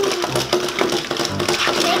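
Battery-powered walking toy pig and dog running, playing an electronic tune with a steady held note and a low beat about once a second, with light clicks from the toys' workings.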